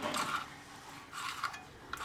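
Stainless-steel chakli press being screwed shut by hand: two short bursts of metal rubbing and clinking, one at the start and one about a second in.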